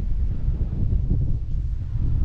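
Wind buffeting the microphone: a steady low rumble.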